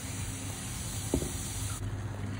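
Pan of thick simmering dal being stirred with a silicone spatula: a faint steady hiss over a low hum, with one light click about a second in.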